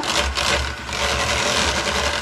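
Electric hand mixer running steadily, its beaters whipping liquid cream in a plastic jug to make chantilly.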